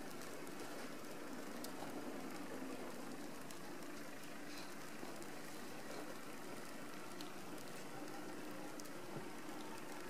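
Faint, steady outdoor background noise: an even hiss with a low hum under it and a few faint ticks.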